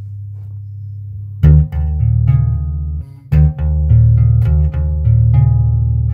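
Bass guitar playing a barred arpeggio pattern with the double-thumb technique and finger tremolo. A held low note rings down for about the first second and a half, then a sharp attack starts a run of quick, rhythmic repeated notes, broken by a short gap near the middle.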